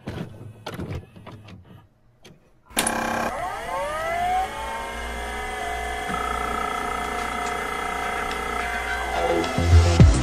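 Electronic intro music for a channel logo. Scattered faint clicks and crackle give way, about three seconds in, to a sudden swell of many synthesized tones that glide upward and settle into a held chord. A heavy bass beat kicks in near the end.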